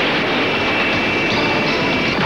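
Action-scene sound effects from an animated film: a loud, continuous noisy rush of an energy blast or explosion, with a steady high-pitched whine over it.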